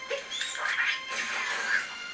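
Nintendo Switch video game audio: a few high, sweeping cartoon-character cries over a bed of steady game music.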